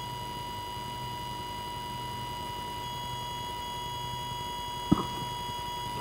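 Faint steady electrical hum with a thin, steady high tone from an open line on an online video call, with a single click about five seconds in.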